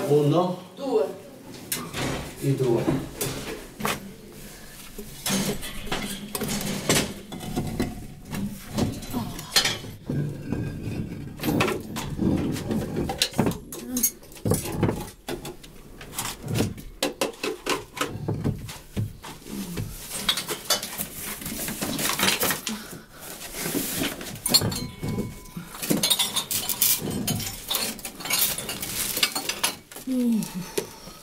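Irregular knocks, clinks and clattering of objects being handled and moved about in a small room, with a voice at times.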